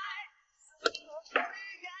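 Billiard shot: a sharp click of the cue tip on the cue ball a little under a second in, then a second click about half a second later as the cue ball strikes an object ball.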